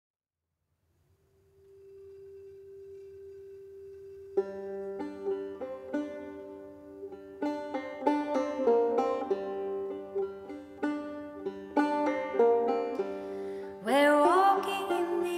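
A soft held tone fades in, and about four seconds in a banjo and acoustic guitar begin a gentle plucked introduction, the notes ringing on in a reverberant church hall.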